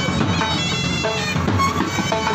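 Band music: a reedy wind melody of held notes over a steady low drone and drumbeats, in the manner of a bagpipe band playing.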